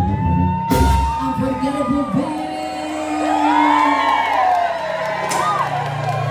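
A live banda of trumpets, clarinets and drums ends a song with a held note and a final hit about a second in. A nightclub crowd then whoops, shouts and cheers.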